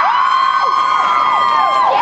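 Audience cheering, with many high-pitched screams and whoops held over one another, dying away near the end.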